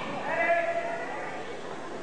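Voices in a large hall: one drawn-out call about half a second in, held for roughly half a second, over a steady background of talking.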